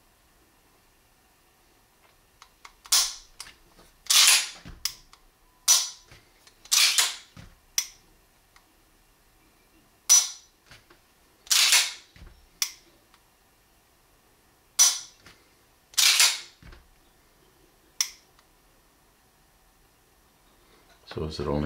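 A 1911 pistol's ambidextrous thumb safety and other controls clicking as the gun is gripped and worked: about a dozen sharp metallic clicks at irregular intervals, some in close pairs. The safety is being pushed on by the pressure of the hand in a high grip.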